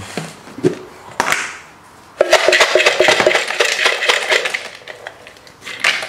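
Dry peanuts rattling and clattering in a metal bowl as they are tipped out into a plastic bowl. The dense clatter starts about two seconds in and goes on for a few seconds.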